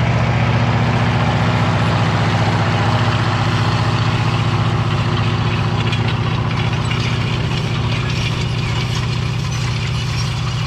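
Tractor engine running steadily as it pulls a White 6180 corn planter past, with rattling and clanking from the planter's row units working over stony ground. The sound eases slightly near the end as the rig moves away.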